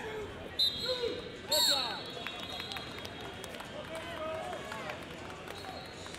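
Shouting voices of coaches and spectators in a large wrestling hall, with two short high whistle-like blasts, the first about half a second in and the second about a second later, as the bout's clock runs out. After that comes the steady murmur of a crowded hall.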